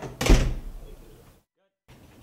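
A sudden loud thump, heaviest in the low end, that fades away over about a second, followed by a short gap of dead silence.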